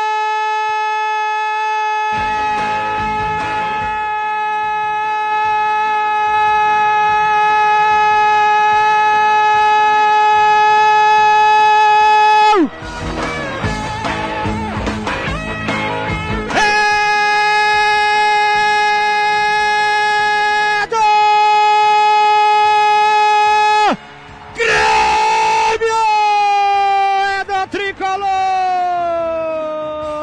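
A Brazilian radio commentator's drawn-out goal cry, 'Gol' held as one long steady note for about twelve seconds. After a short break he takes it up again in several more long held notes, and the last one slides down in pitch near the end.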